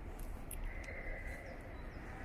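Quiet outdoor background sound: a low steady rumble, a few faint clicks, and a faint steady high tone that starts about a third of the way in.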